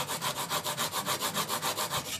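Steel plane blade in a honing guide stroked rapidly back and forth on a diamond sharpening plate, an even, rhythmic scraping of steel on the abrasive. The blade is being ground past a rounded-over edge to raise a burr.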